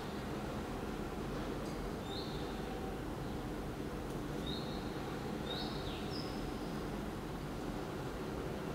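Steady background room noise with a few faint, short, high chirps, like distant birds, scattered through the middle.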